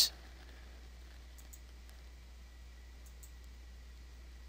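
Quiet room tone with a steady low hum and a faint high whine. Over it come a few faint clicks of a stylus on a drawing tablet, about a second and a half in and again a little past three seconds.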